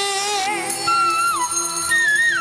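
Live Bangla Baul folk song. A woman's sung note with vibrato ends about half a second in, then the accompanying band carries on with a melody of steadily held notes that steps down in pitch.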